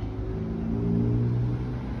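A car engine running, with a steady low hum that grows louder and shifts slightly in pitch around the middle.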